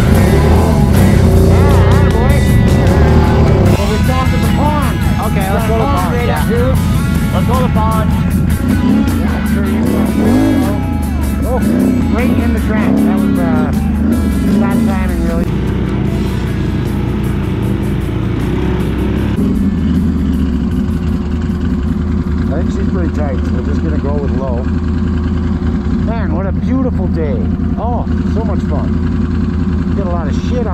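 Rock music with singing laid over a Can-Am Renegade X mr 1000R ATV's V-twin engine running along the trail.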